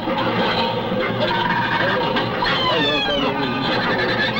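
Layered voice montage mixed with electronic music, no clear words. Held steady tones run underneath, and a cluster of falling glides sweeps down about two and a half seconds in.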